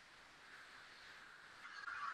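Near silence: faint hiss from the recording.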